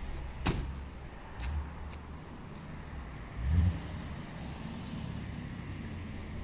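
Fuel-station vehicle sounds: a steady low rumble with a sharp knock, like a van door shutting, about half a second in, then two dull thumps, the second and louder one past the middle.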